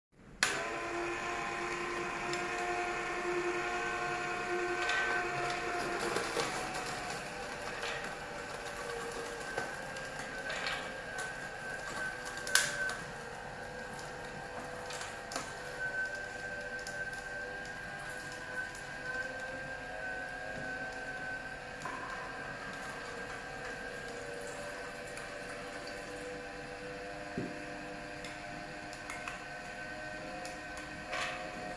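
HH-916F slow juicer's motor running steadily, a hum made of several held tones, with a few sharp clicks and knocks of handling; the loudest click comes about twelve seconds in.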